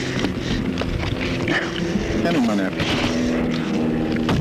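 Voices with words too unclear to make out, over a steady hum.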